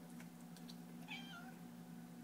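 A domestic cat meows once for food, a short call about halfway through that drops in pitch at its end. A few faint clicks come just before it.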